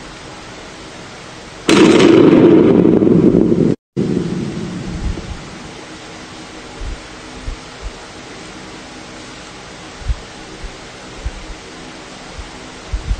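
A loud rumbling noise starts suddenly about two seconds in and cuts off abruptly about two seconds later. It fades into a steady hiss with scattered low thumps.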